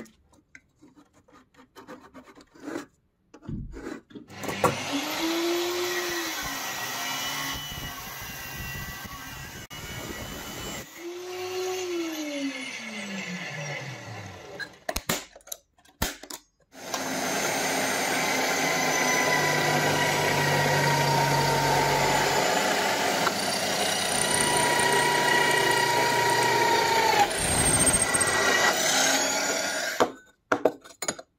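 Electric drill in a drill stand boring holes through a thin metal plate. Two short runs in which the motor spins up and then winds down, followed by a long steady run of the bit cutting through the metal over the second half.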